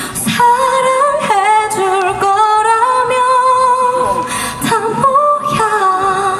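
A female pop vocalist singing live over backing music, holding one long high note with vibrato for about three seconds, then moving through a few shorter notes near the end.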